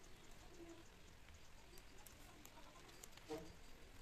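Near silence: faint light ticks of plastic wire cord being handled and tucked while a bag is woven by hand, with one brief, slightly louder sound about three seconds in.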